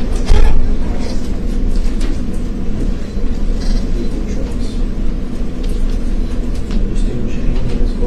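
Steady low hum and rumble, with one loud bump just after the start and faint snatches of speech too soft to make out.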